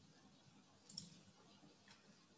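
Near silence, with one short faint click of a computer mouse button about a second in and a fainter click just before the end.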